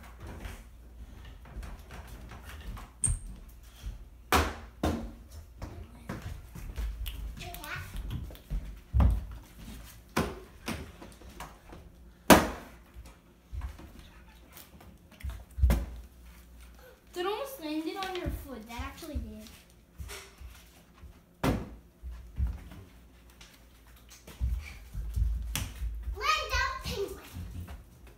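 Plastic water bottle being flipped and thudding down again and again, about ten sharp knocks and clatters spread out, the loudest about twelve seconds in. A child's voice is heard briefly a little past the middle.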